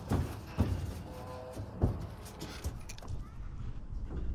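A steady low wind rumble on the microphone with a few scattered knocks, as foals shift about inside a stock trailer.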